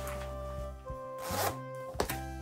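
Background music, with a short rasp of the life vest's front zipper being pulled about a second in.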